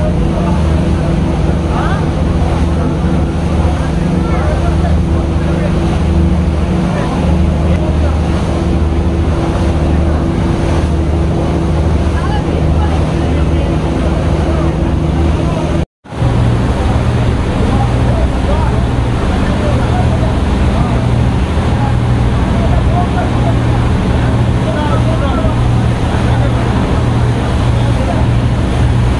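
A passenger launch's engines droning steadily under the rush of storm wind, rain and breaking waves against the hull. The sound cuts out for an instant a little past halfway and comes back with the engine drone at a different pitch.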